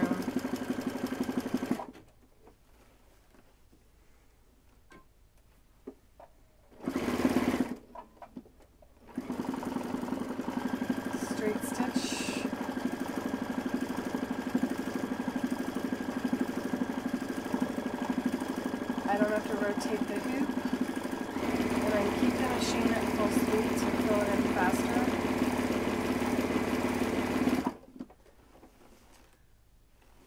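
Home sewing machine stitching free-motion embroidery. It runs briefly at the start, stops for several seconds, starts again at about nine seconds and runs steadily, louder and quick for the last several seconds, then stops shortly before the end. A short burst of noise comes at about seven seconds, during the pause.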